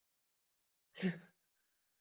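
A woman's single short, breathy sigh about a second in.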